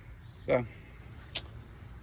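A low, steady outdoor background rumble under the single spoken word "So," with one short, sharp click about a second and a half in.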